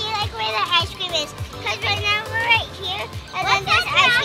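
Several children's voices chattering, with background music underneath.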